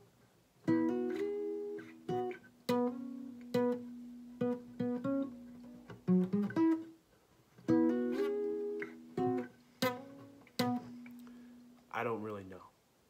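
Acoustic guitar (a Fender) playing a short single-note lick on the D string around the 9th and 11th frets, with sustained ringing notes under sharp plucks. The phrase is played twice, starting about a second in.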